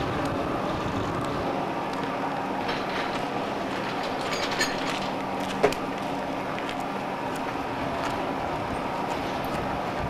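A steady machine hum, like a running motor or engine, held at an even level, with one sharp click about five and a half seconds in.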